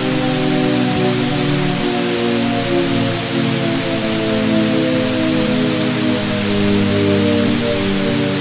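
Loud static hiss layered over a falling Shepard tone, a stack of tones that slide slowly and steadily downward.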